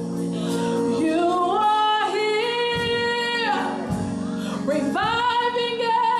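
Gospel music with a singing voice holding long notes, sliding up into a new note about a second in, two seconds in and again near five seconds, over sustained accompaniment.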